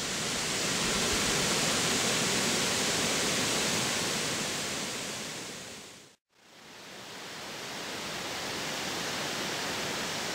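Steady, even rushing noise of the outdoor ambience. It drops out briefly about six seconds in and fades back up.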